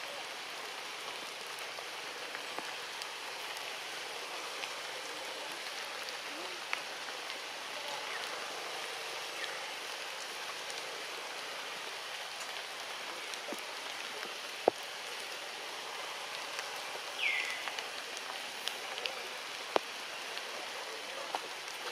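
Steady hiss of tropical forest ambience, with a few sharp clicks, the loudest about fifteen seconds in, and a brief high squeak that falls in pitch a little after seventeen seconds.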